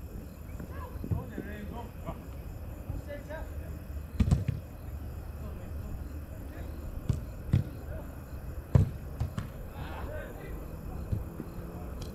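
Distant shouts of footballers calling to each other during five-a-side play on artificial turf, over a low steady rumble. Several sharp thuds of the ball being struck are heard, the loudest about four and nine seconds in.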